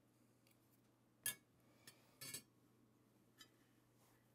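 Near silence with a few faint, short clicks and light knocks, the first about a second in the loudest, from the lid of an enamelled cast-iron Dutch oven being handled.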